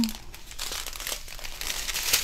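Crinkling of clear plastic bags of diamond painting drills as a strip of them is handled and turned in the hands.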